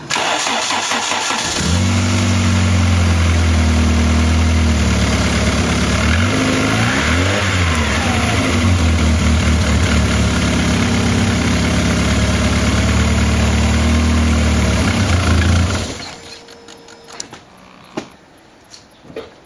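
Car engine cranked on the starter, catching after about a second and a half and then idling steadily. It is revved once briefly around six to eight seconds in, then shut off near the end.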